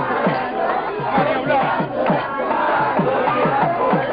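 A devotional crowd shouting and chanting together over a drum beaten about three strokes a second, each stroke dropping in pitch.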